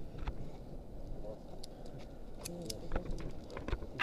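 Faint scattered clicks and knocks over a low background murmur, with faint voices now and then.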